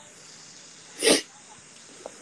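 Steady hiss from an open microphone on a video call, with one short noisy burst about a second in, sneeze-like.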